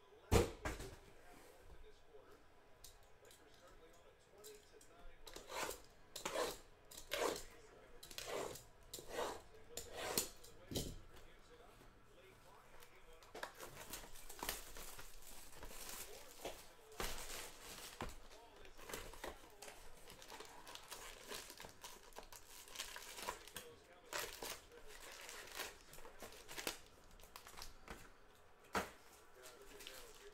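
Plastic shrink wrap being torn and crumpled off a sealed box of trading cards, a run of short crinkling rips that comes thicker around the middle.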